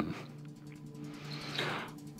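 Soft background music: a low chord of a few tones held steady under a pause in the narration.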